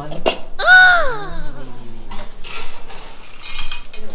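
A domestic cat gives one loud meow about half a second in, its pitch rising briefly and then sliding down. Two short scratchy rattles follow later.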